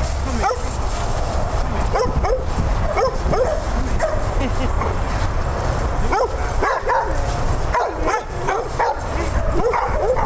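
Several dogs barking and yipping over one another in short, quick calls throughout, over a steady low rumble.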